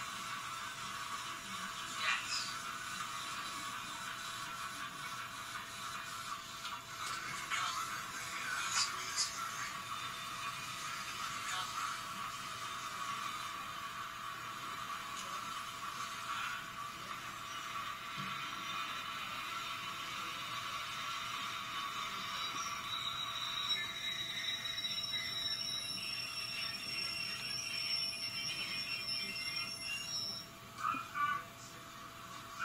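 A train passing a station, played back through a camera's small built-in speaker, so it sounds thin and tinny. A steady noise runs throughout, and a few high, steady whistling tones come in near the end.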